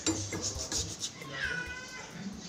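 Metal gas-stove burner parts knocking and clinking as they are handled and scrubbed in a plastic tub of water. A short high-pitched sound that dips slightly and then holds comes about a second and a half in.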